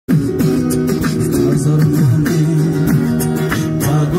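Live music: an acoustic guitar played along with a low, gliding vocal line into a handheld microphone, with repeated sharp percussive clicks.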